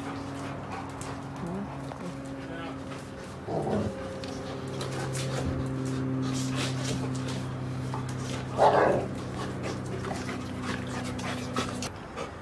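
A steady low mechanical hum throughout. A Rottweiler makes a short vocal sound about nine seconds in, the loudest moment, and a briefer, lower one about three and a half seconds in.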